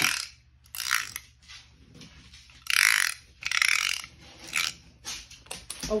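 Plastic fidget piece of an FX sensory bar worked by hand to show off its sound. It gives several short rasping bursts a second or so apart, then a quicker run of clicks near the end.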